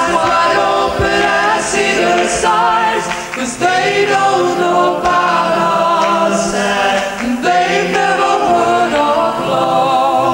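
A vocal group of men's and women's voices singing together in harmony, with held notes and no clear instrumental beat.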